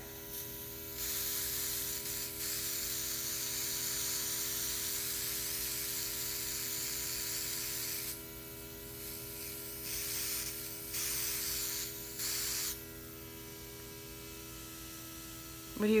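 Luminess Air airbrush makeup system spraying eyeshadow: the compressor hums steadily while the airbrush gives a soft hiss. There is one long spray of about seven seconds, then two short sprays a couple of seconds later, and after that only the compressor hum.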